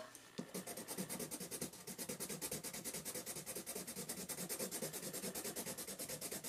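Prismacolor colourless blender pencil rubbed over layered coloured pencil on paper: a faint, steady scratching of quick back-and-forth strokes as it blends the colours together.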